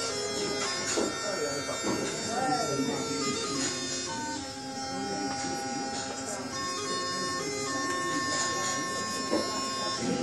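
A wind instrument plays a slow line of long held notes, each note steady, stepping between pitches, with a murmur of voices underneath.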